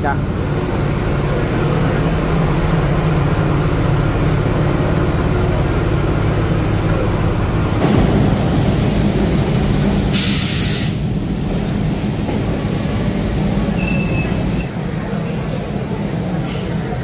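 Diesel locomotive engine running with a steady low drone, and a loud burst of hissing air about ten seconds in, lasting about a second.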